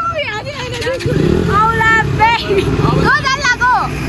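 Low engine rumble of vehicles in street traffic, stronger from about a second in, under voices calling out.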